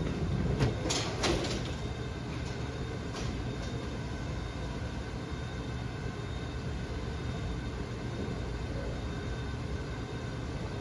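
Bowling alley background: a steady rumble from other lanes, with a few sharp clatters in the first second and a half.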